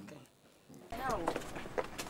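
A voice says a short 'no', then a few sharp, spaced footstep clicks on hard ground.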